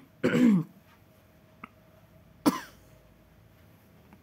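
A woman clears her throat just after the start, then gives one short, sharp cough about two and a half seconds in.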